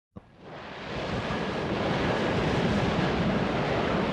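Steady rushing noise that fades in over about the first second, after a faint click at the very start.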